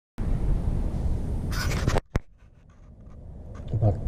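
A cloth rag rubbing and wiping over the polished steel head of a rail-section anvil for about two seconds, cutting off abruptly, followed by a single sharp click.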